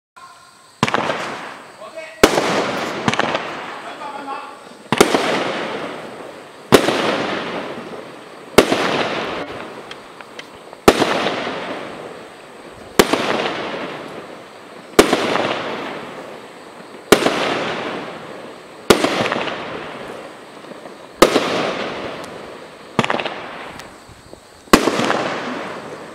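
A Skycrafter Sky Boss 110-shot fireworks cake firing its shots one after another: a sharp bang about every two seconds, about thirteen in all, each followed by a long fading crackle.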